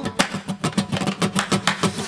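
Live acoustic band music with no singing: an acoustic guitar strummed in a quick, even rhythm.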